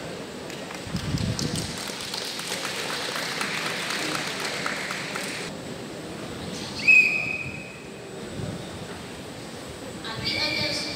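Audience applause, many hands clapping for about four seconds, then cut off abruptly. Near seven seconds in comes one sharp referee's whistle blast about a second long, the official's signal to start the next routine.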